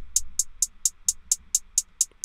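Hi-hat track of a programmed electronic beat playing on its own: short, high ticks at about four a second. It plays through a parametric EQ set with a low cut.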